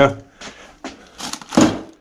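Clear plastic bag crinkling and rustling in a few short bursts as a bagged set of bike brakes is set down on a parts-drawer cabinet, the loudest rustle about one and a half seconds in.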